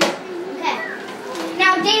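Young children's voices with no clear words, ending in a loud, high-pitched child's call, and a brief sharp knock at the very start.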